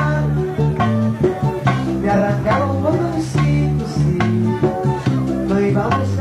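Bachata band playing live: plucked guitar lines over sustained bass notes and a steady percussion beat.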